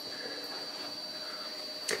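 Steady high-pitched whine from the CNC machine's servo motors and drives, just switched on and holding position. A single click near the end.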